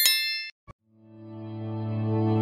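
A bright bell-ding sound effect for the notification bell of a subscribe animation, ringing out and fading over about half a second, followed by a short click. From about a second in, low sustained music swells up gradually.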